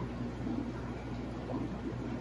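Steady background of running aquarium equipment: a low hum under a constant wash of moving water and air bubbles.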